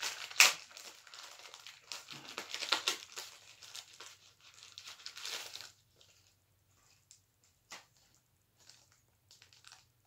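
Small plastic packaging being crinkled and torn open by hand. A dense run of crackling and tearing lasts about the first six seconds, with a sharp loud rip about half a second in. After that come only a few faint rustles and clicks.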